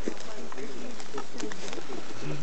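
Indistinct voices of several people talking at a distance, with a few short, sharp clicks scattered through.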